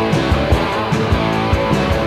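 Instrumental passage of a rock song: guitars over bass with a steady drum beat.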